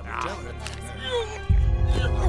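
Film soundtrack: brief voices over background music, then about one and a half seconds in a loud, deep bass sound comes in suddenly and carries on.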